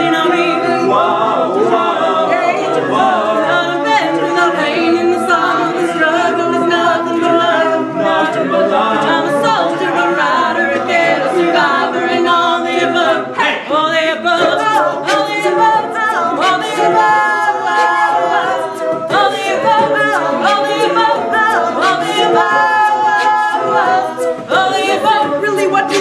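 Mixed-voice a cappella group singing: a female lead voice over layered backing voices, with vocal percussion keeping a beat.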